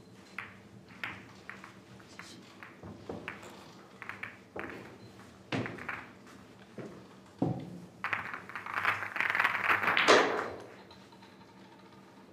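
Billiard balls clicking against each other and the table as they are gathered, with single sharp knocks spaced about a second apart. Near the end comes a dense rattle of balls being packed together for about two and a half seconds, loudest just before it stops, typical of the balls being set in the triangle rack.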